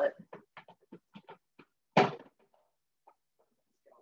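A quick run of about eight short knocks and clatters over the first second and a half, from a rinsed food processor bowl being handled to get the extra water out of it.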